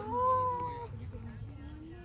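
A woman's drawn-out, high-pitched excited cry lasting nearly a second, an emotional greeting during a hug, fading to soft low voice sounds.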